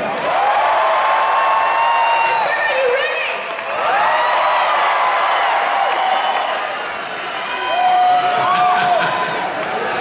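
Large concert crowd cheering and whooping, with single long 'woo' shouts standing out above the roar.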